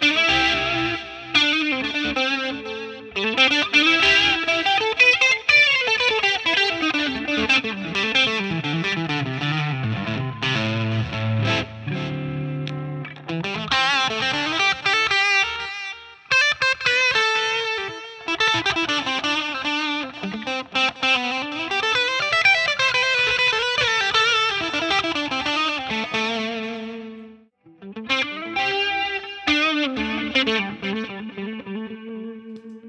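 Ibanez AZ Prestige AZ2402 electric guitar played through a crunch tone with effects: a continuous lead line of quick runs and gliding, bent notes. Near the end the playing stops briefly, then an Ibanez AZ2202A starts a new phrase with the same tone.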